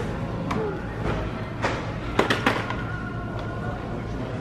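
Background music, over which a stroller frame is unfolded and locked open, giving a few sharp plastic-and-metal clicks. The two loudest clicks come close together a little past the middle.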